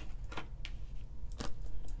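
A few light clicks and taps as tarot cards are handled and laid down on a table.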